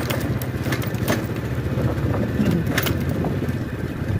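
Small motorcycle engine running steadily under way over a rough unpaved lane, with a few sharp clicks and rattles scattered through it.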